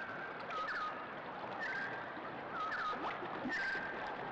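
Birds chirping in short repeated calls, roughly one a second, over a steady hiss of outdoor ambience.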